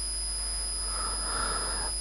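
A pause in speech filled by steady recording hiss and hum with a faint constant high-pitched whine. From about a second in, a soft breath is drawn in just before speech resumes.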